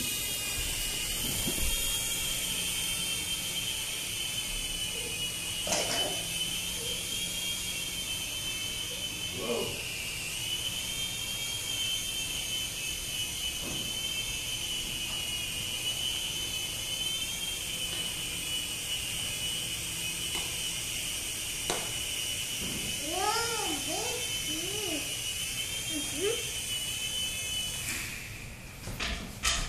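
Small battery-powered toy airplane's electric motor and propeller in flight, a steady high-pitched whine whose pitch wavers gently up and down; it stops at the very end. A few short sing-song vocal sounds from a young child come a few seconds before the end.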